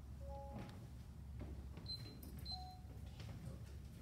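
Low steady hum with a few brief, faint tones at different pitches.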